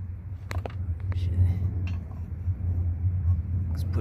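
A steady low rumble, with a few light clicks of a metal bolt and a license plate bracket being handled as the bolt is fitted.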